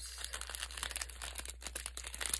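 A clear plastic packet crinkling as it is handled and opened, a run of quick, irregular crackles.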